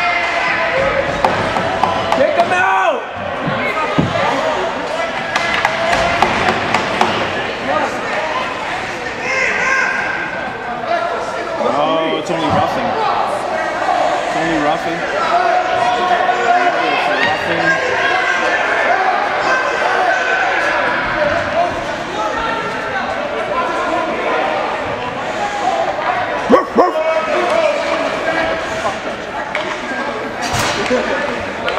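Indistinct voices of players and spectators echoing around an ice rink arena, with a few sharp knocks, such as sticks or pucks hitting the boards, the loudest near the end.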